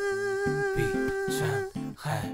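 A male singer holds one long steady note, ending it shortly before the end, over guitar picking out low notes underneath.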